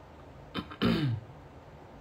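A man clearing his throat once, about a second in: a short catch followed by a louder voiced sound that falls in pitch.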